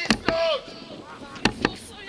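A football kicked hard: a sharp thud, followed at once by a short shout. Two more quick thuds close together about a second and a half in.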